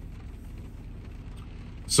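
Steady low rumble of a parked car idling, heard from inside the cabin.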